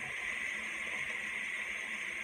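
Chopped vegetables frying in oil in a pot, a steady, even sizzle.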